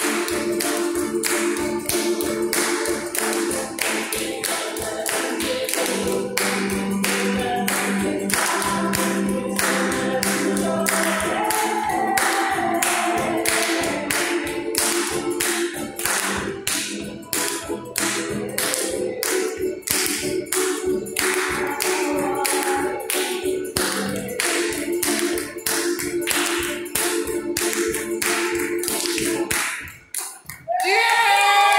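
Acoustic string band of ukuleles, banjo and guitars strumming a song in a steady, even rhythm, the music stopping right at the end.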